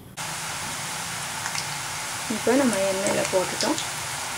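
Karasev (spicy gram-flour sev) strands deep-frying in hot oil: a steady sizzle that starts abruptly just after the start, with a voice talking over it from about halfway through.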